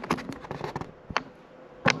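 Handling noise: a few light clicks and taps in the first half second, a single click about a second in, then louder knocks near the end.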